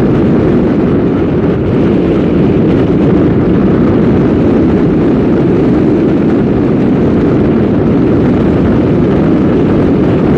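Steady rumble of a car driving along a city street: road and engine noise that stays level throughout.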